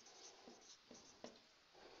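Faint strokes of a felt-tip marker on a whiteboard as a word is written.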